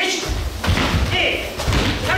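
Several dull thumps of bare feet landing on a mat-covered wooden floor as a group of karate students step through stances together, over a low rumble, with voices in the room.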